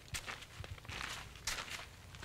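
Faint footsteps on a wooden plank walkway, a few soft steps about half a second apart.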